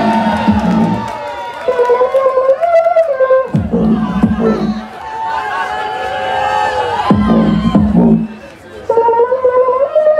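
Beatboxer performing through a cupped handheld microphone over a PA: three deep bass sweeps falling into a low buzzing hum, about three and a half seconds apart, with vocal tones layered above.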